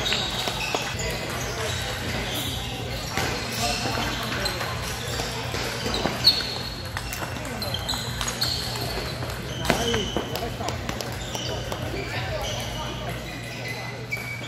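Table tennis balls clicking off paddles and tables, a point being played amid rallies at many nearby tables, over a background murmur of voices.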